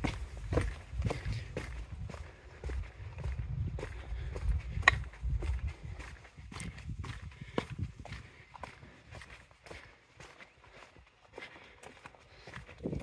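Footsteps on a stone-paved walkway at a steady walking pace, about two steps a second, with one sharper click about five seconds in.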